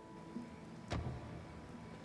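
A single sharp knock about a second in, with a low thud under it, over faint steady tones in the background.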